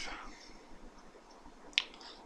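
A man's voice trails off, then a pause broken by a single short, sharp mouth click near the end, just before he speaks again.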